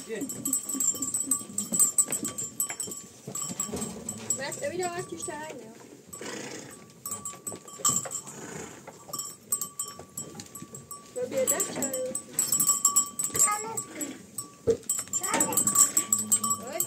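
Goats bleating in a pen: several wavering calls in the middle and again later, over the clicking and rustle of the herd feeding.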